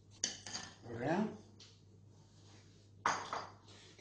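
Metal spoon and fine-mesh sieve clinking as they are set down in a bowl: a couple of quick clinks at the start, then another clink or knock about three seconds in.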